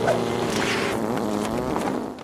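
A steady buzzing sound effect in a cartoon soundtrack.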